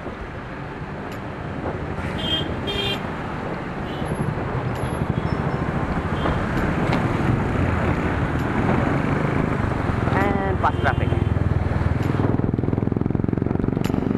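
City road traffic heard from a moving bicycle: motorcycle and car engines running close by, with wind and road noise on the action camera's microphone growing louder after a few seconds. A short pitched sound rises out of the din about ten seconds in.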